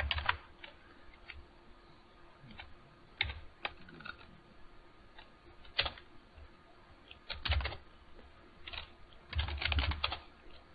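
Typing on a computer keyboard: short clusters of keystrokes separated by pauses, with the busiest run of keys near the end.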